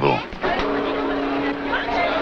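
Street traffic noise with a vehicle's engine humming on one steady pitch, starting about half a second in.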